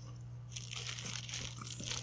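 Thin Bible pages rustling and crinkling as they are leafed through, starting about half a second in, with small clicks among them, over a steady low hum.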